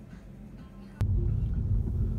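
Quiet background music with a few steady tones, then a sudden cut about a second in to the loud, low rumble of a car driving, heard from inside its cabin.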